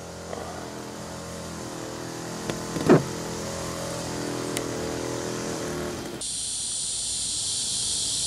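A steady motor hum with several held tones, like an engine running, with a brief sound about three seconds in. About six seconds in it cuts abruptly to a steady high buzz of insects.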